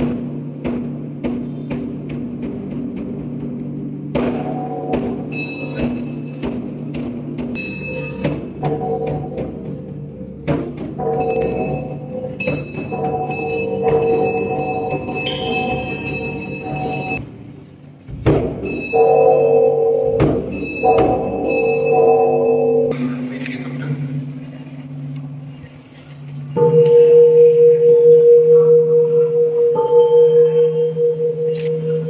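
Buddhist temple ritual percussion: a run of separate strikes with ringing bell tones over a low steady drone. About 27 seconds in, a large bronze bowl bell is struck and rings on loudly with a pulsing hum.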